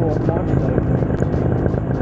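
Paramotor engine and propeller running steadily at cruise in flight.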